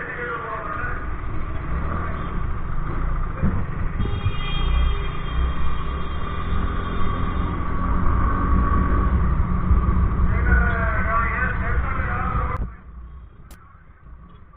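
TVS Ntorq 125 Race XP scooter riding through city traffic: small engine running under a steady wind rumble on the microphone, with muffled voices now and then. The sound drops off sharply near the end.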